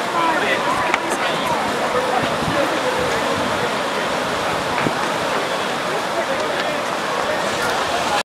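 Fast white water rushing steadily through a concrete channel, with people's voices and shouts over it.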